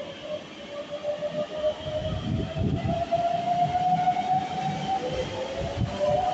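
Hokuso 7300-series electric train pulling away: its Toyo GTO-VVVF inverter whines, the pitch climbing steadily, dropping back about five seconds in and starting to climb again, over a rumble of the running gear that grows as it gathers speed.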